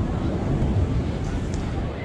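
Wind buffeting the camera's microphone: a steady low, noisy rush with no clear tones.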